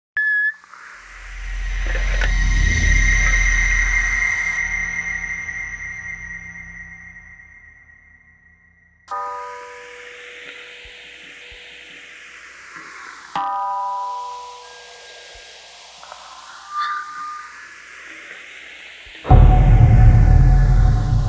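Horror trailer score and sound design. A deep rumbling swell with a high ringing tone builds and fades away over several seconds. Then come two ringing struck hits about four seconds apart, each trailed by a sweeping hiss, and a loud low hit just before the end.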